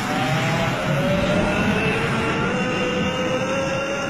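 A loud, steady engine-like roar with a whine that slowly climbs in pitch.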